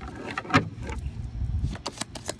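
A deck of oracle cards being shuffled by hand: a quick run of sharp card clicks and flicks, the loudest about half a second in, over a low rumble.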